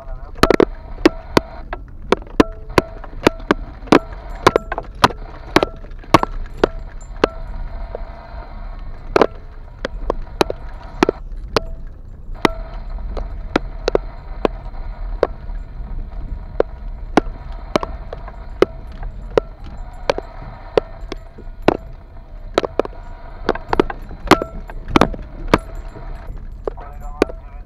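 A car driving slowly over a rough, rutted dirt track: irregular sharp knocks and rattles from the body and suspension, about one or two a second, over a low steady road and engine rumble.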